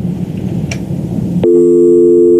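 Telephone line noise, a rough crackling hiss from a phone call that has gone bad. About one and a half seconds in, a loud, steady telephone busy tone cuts in: the caller's line has been disconnected.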